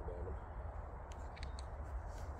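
Steady low rumble of wind buffeting the microphone, with a few faint short clicks about a second and a half in.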